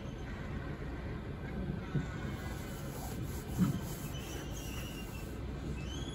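Steady low rumble of room noise in a large hall, with a couple of faint brief knocks.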